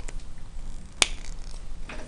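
A single sharp click about a second in, over a faint steady room background.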